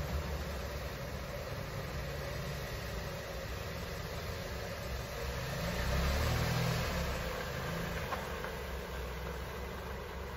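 A car engine idling, then picking up a little about six seconds in as the SUV pulls away slowly.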